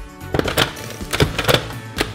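Cling film pulled from a Wrapmaster dispenser, cut and pressed over a glass dish, giving a quick series of sharp clicks and crackles. Background music plays underneath.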